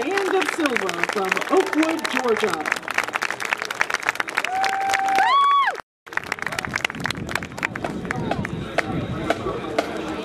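Crowd applauding and cheering, with dense hand clapping and shouting voices. About five seconds in, one long held cheer rises sharply in pitch, and the sound cuts out for a moment just before six seconds in.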